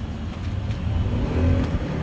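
Low, steady rumble of passing road traffic, like a car or motorbike going by.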